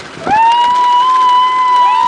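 A long, high, held cheer: a whoop that rises into a steady note, with a second whooping voice joining near the end.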